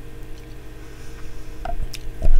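A few faint, soft clicks and taps from small model parts being picked up and handled on a cutting mat, over a steady low hum.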